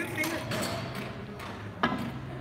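A single sharp click near the end: a pool cue striking the cue ball, over low room noise.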